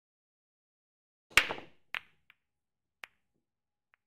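A few short, sharp clicks and knocks out of dead silence: the loudest about a second and a half in, with a short tail, then fainter single clicks about half a second and a second and a half later.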